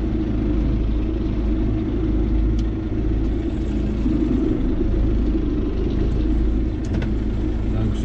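John Deere 5070M tractor's four-cylinder diesel engine running steadily at low revs, about 1100 rpm, heard from inside the cab while it pulls a sprayer slowly across a field.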